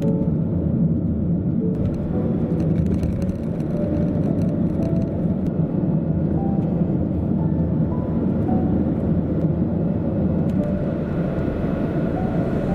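Steady low road and engine rumble inside a Toyota Voxy minivan's cabin at cruising speed, with quiet background music playing a melody over it.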